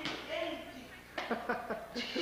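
Faint voices and short bursts of laughter in a room, with a single sharp knock at the very start.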